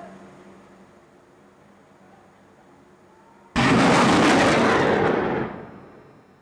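A sudden loud blast about three and a half seconds in, its rushing roar holding for nearly two seconds before dying away.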